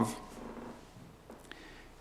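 A man's voice trailing off into a pause, leaving quiet room tone with a faint click about one and a half seconds in.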